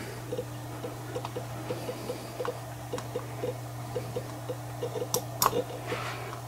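Soft, quick ticking about three to four times a second over a steady low hum, with two sharper clicks near the end: a computer mouse's scroll wheel and buttons working as the security-camera recording is rolled back.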